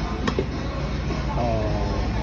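Casino floor din: indistinct background voices over a steady low rumble, with a single sharp click shortly after the start.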